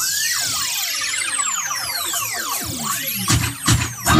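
A break in the music where the backing beat drops out and is replaced by a swooping pitch-sweep effect: many tones gliding up and down and crossing one another, with a couple of short hits near the end before the beat comes back.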